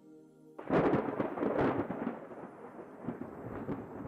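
A faint held music chord, then about half a second in a sudden thunderclap that rumbles on and slowly dies away.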